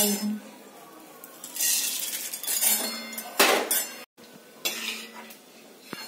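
A perforated steel ladle scraping and clinking against a steel kadai while roasted chironji are stirred and scooped out of the ghee. The loudest scrape comes about halfway through, followed by a few lighter clinks.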